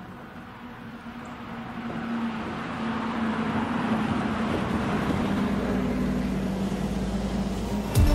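City bus approaching and driving past, its engine growing louder over the first few seconds and then holding a steady note as it passes close by.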